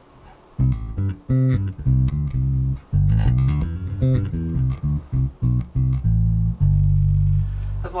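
Zon VB4 headless four-string electric bass with active Bartolini pickups played fingerstyle: a line of short plucked low notes starts about half a second in, then ends on one long held note near the end, showing the bass's sustain.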